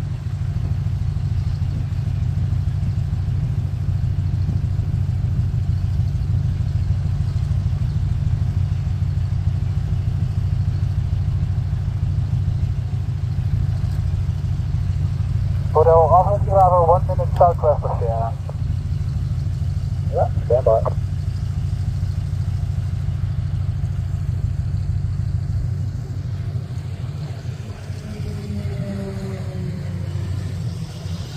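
Steady low engine rumble, with two short bursts of voice over an aircraft radio about sixteen and twenty seconds in. Near the end the falling drone of a light aircraft flying past comes in.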